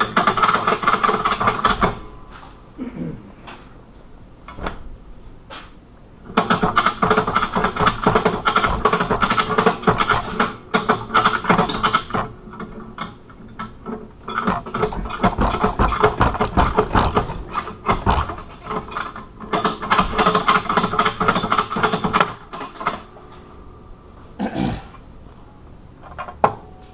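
A man groaning with strain in four long, rough efforts while forcing bolt cutters shut on a hardened padlock shackle, the longest effort about six seconds; a single knock near the end.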